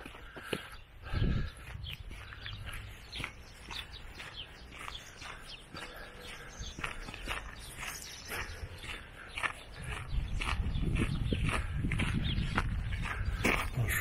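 Footsteps crunching on a gravel track at walking pace, about two steps a second. Low wind rumble on the microphone builds up in the last few seconds.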